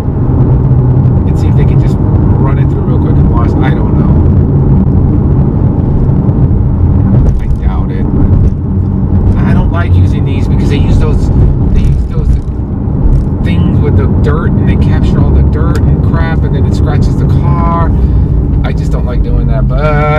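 Porsche 911 Carrera (991) under way, heard from inside the cabin: a steady, loud low drone of its rear-mounted flat-six engine and road noise at an even cruising pace, with a man talking over it at intervals.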